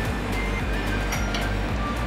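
Background music with a steady beat and a heavy, even bass line.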